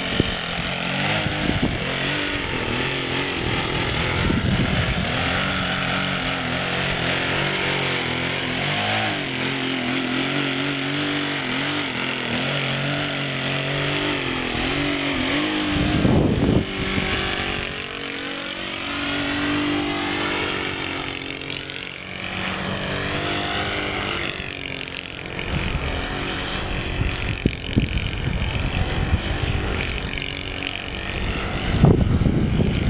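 Saito 125 four-stroke glow engine on a profile aerobatic RC plane, its note rising and falling with the throttle as the plane manoeuvres. It swells loudest about halfway through as the plane passes close, then fades as the plane climbs away. Wind gusts rumble on the microphone.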